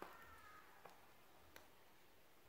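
Near silence: room tone, with a faint short falling call in the first half second and two faint ticks later.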